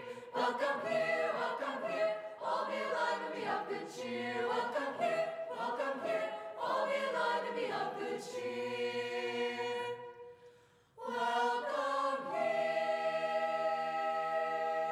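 Mixed-voice madrigal choir singing a carol in harmony. The phrases settle onto a held chord about eight seconds in, break off briefly near eleven seconds, and then a final chord is held to the end.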